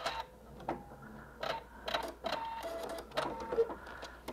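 Pfaff Performance Icon computerized sewing machine finishing its last stitch, tying off and cutting the thread with its automatic thread cutter: a string of irregular clicks and short motor whines.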